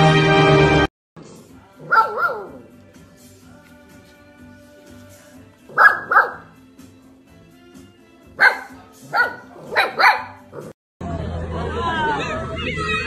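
Puppies yipping and barking in short calls: one about two seconds in, a quick pair around six seconds, and a run of four near the end.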